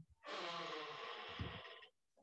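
A man's long, soft, breathy exhale, like a sigh, lasting about a second and a half.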